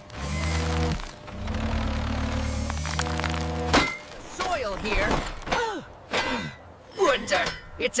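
Background music of held chords, then one sharp thunk about four seconds in, as a metal shovel strikes hard-packed, compacted dirt. Short wordless vocal sounds with gliding pitch follow.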